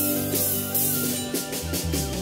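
Live band music in an instrumental passage: an end-blown cane flute (ney) plays a held, wavering melody over drum kit, bass and regular cymbal strokes.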